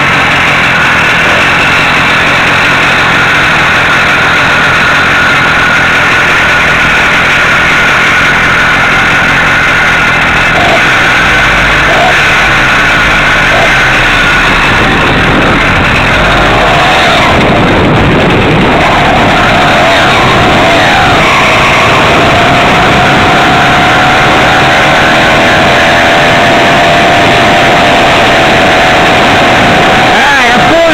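Small two-stroke engine of a motorized bicycle running loud and steady as the bike sets off from a stop, its pitch climbing gently in the second half as it gathers speed.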